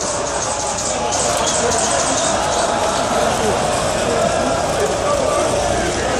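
A large crowd in the street, many voices shouting and talking at once in a steady din.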